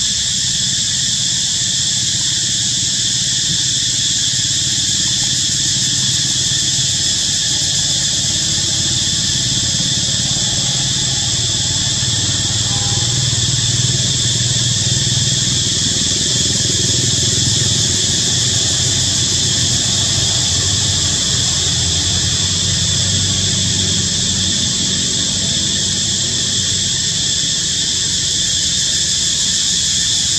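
Steady, loud insect chorus with several high, unbroken droning pitches. A low engine rumble from a motor vehicle builds up through the middle and eases off again.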